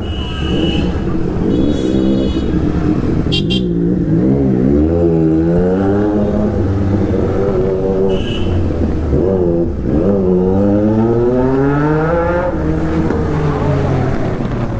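Motorcycle engine heard from the rider's seat, revving up and dropping back again and again as the rider accelerates, shifts and eases off at low speed. A few short high beeps come through near the start and about eight seconds in.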